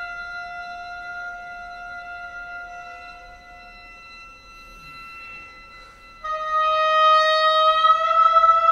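Oboe holding a long sustained note that fades away about four seconds in; after a short quiet gap a new, louder held note begins about six seconds in.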